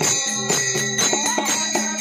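Warkari devotional music: a two-headed barrel drum (mridang) and small brass hand cymbals (taal) played in a steady beat of about four strokes a second, the cymbals ringing, with voices singing.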